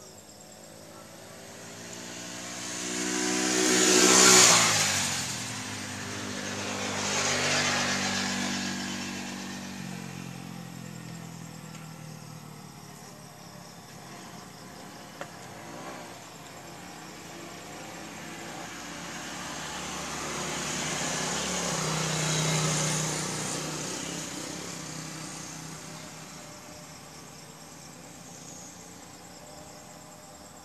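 Motor vehicles passing by, one after another: the loudest about four seconds in, another a few seconds later, and a slower one around twenty-two seconds. The engine note drops in pitch as each one goes past.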